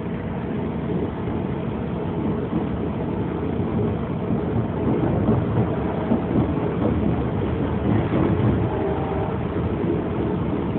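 Long Island Rail Road commuter train heard from inside the passenger car, running as it pulls away from a station and picks up speed; the steady low running noise grows louder from about halfway through.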